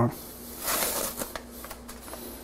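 A packet of Hondashi dashi powder being torn open by hand: a rustling tear about half a second in, followed by a few light crinkles of the packet.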